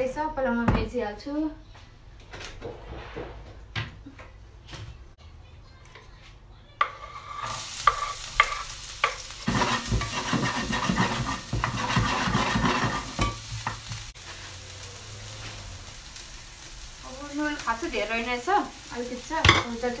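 Food frying in a pan on the stove, stirred and scraped with a wooden spatula. A few light knocks come first; the sizzle starts suddenly about seven seconds in, with a burst of quick scraping strokes a few seconds later.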